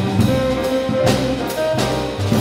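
Small jazz combo playing live: a saxophone holds long melody notes over upright bass notes, with the drum kit's cymbals struck several times.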